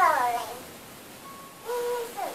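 A young child's high voice: a drawn-out call that slides down in pitch at the start, then a short held note near the end.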